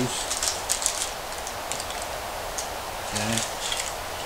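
Parchment paper rustling and crinkling while a silicone spatula spreads and scrapes thick chocolate fudge mixture into a lined pan, as scattered light crackles over a steady hiss.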